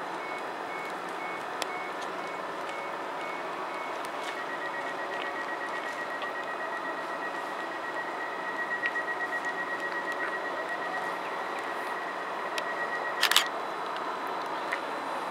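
Door warning beeps from a Stadler FLIRT train standing at the platform: spaced high beeps, then a faster run of beeps lasting about nine seconds. A loud clatter cuts in near the end.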